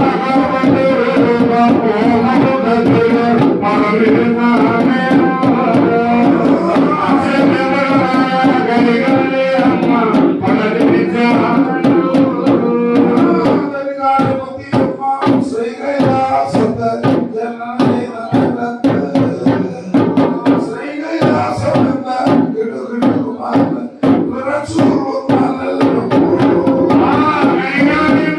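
Kalam pattu ritual song: voices singing with drum accompaniment. About halfway through, the singing thins and separate drum strokes stand out.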